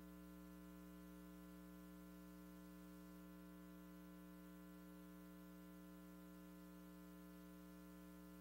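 Faint, steady electrical mains hum, the only sound on the silent lead-in of a broadcast videotape before the programme audio begins.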